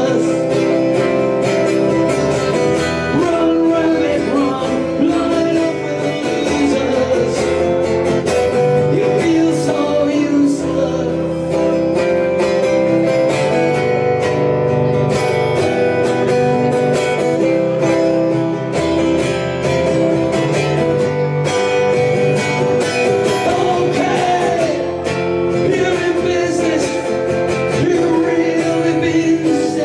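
Live solo acoustic guitar, strummed steadily, with a man singing over it at times.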